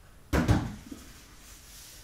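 A large stretched canvas on its wooden frame knocking against the wall and the canvas below as it is stood in place: two sharp knocks close together near the start, then a lighter knock, and a soft rubbing near the end as it is shifted.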